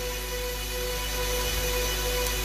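Soft background music holding one steady chord, with a low hum under it.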